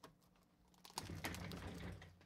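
Hands handling a cardboard trading-card hobby box: one click at the start, then about a second in a quick run of clicks and scrapes for most of the second half.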